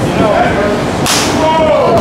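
A single sharp slap about a second in, with shouting voices around it.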